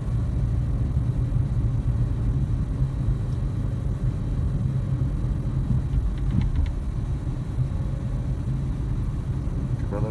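Steady low rumble of engine and road noise inside the cabin of a moving Toyota car.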